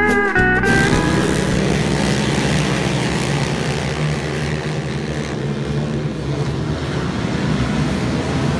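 Slide-guitar music cuts off under a second in, giving way to a pack of racing quad ATVs with their engines running together at speed in a steady, loud drone.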